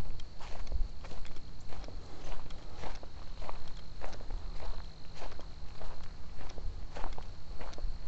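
Footsteps of a person walking at a steady pace on a dirt trail covered in dry fallen leaves, about two steps a second.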